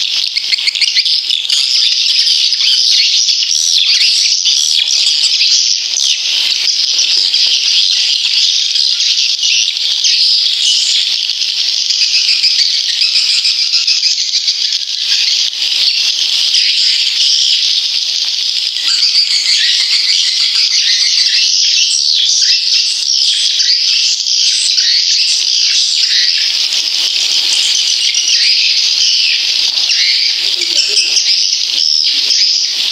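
Swiftlet call recording: a dense, continuous twittering of many high-pitched swiftlet chirps, the kind of looped lure sound played in swiftlet houses to draw the birds in to nest.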